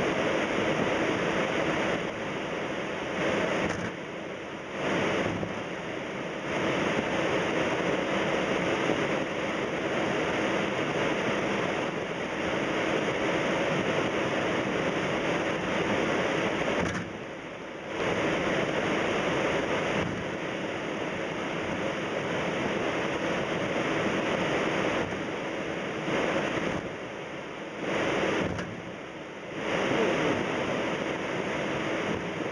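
Steady rushing noise with a low hum on the flight deck of a Boeing 767 taxiing, from its idling engines and air conditioning. The noise drops away briefly three times, about 4, 17 and 28 seconds in.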